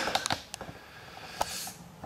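A few light clicks and taps over quiet room tone: a cluster right at the start, one about half a second in, and a sharper one about a second and a half in.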